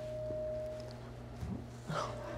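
A faint steady tone held at one pitch that fades out about a second in, with a couple of soft thumps near the end.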